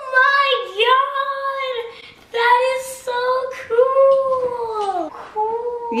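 A young boy's high voice in a run of long, drawn-out wordless cries of delight, half sung, each held note arching up and falling away.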